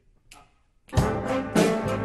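A middle school big band comes in together about a second in, after a near-silent pause at the end of the count-off: trombones, trumpets and saxophones play a loud hip-hop-style jazz chart over regular low drum beats.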